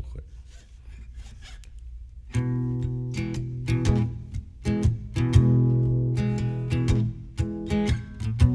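An acoustic guitar starting the instrumental intro of a song: after about two seconds of near-quiet with faint clicks, strummed chords come in and keep going, changing chord several times.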